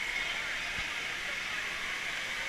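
Steady, even din of a large indoor waterpark hall: rushing water and distant crowd voices blended into one hiss-like wash.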